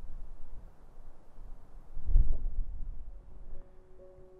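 Wind buffeting the microphone as a low rumble, with a strong gust about halfway through. Near the end, soft piano music begins to fade in.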